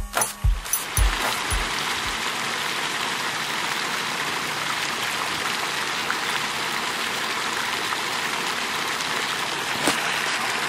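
Water pouring steadily from a fountain's ledge into its pool, a constant splashing rush. A few low music beats fade out in the first two seconds.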